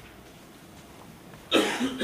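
Quiet room tone, then a single short cough about one and a half seconds in.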